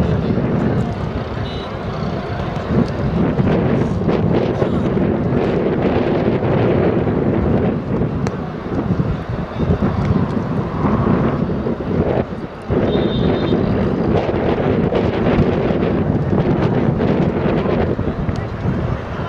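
Wind buffeting the microphone over the steady murmur and chatter of a large crowd of spectators, with a brief drop in the noise about twelve seconds in.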